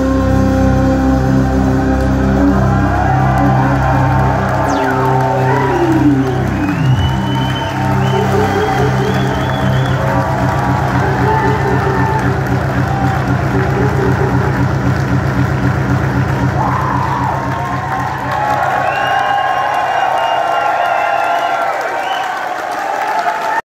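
Live synthesizer drone closing a jazz-electronic set: long held low notes and a falling glide, then a fast pulsing tone that fades out near the end. The audience cheers and whoops over it.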